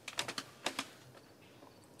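Typing on a laptop keyboard: two quick runs of key clicks in the first second, then a few scattered light taps.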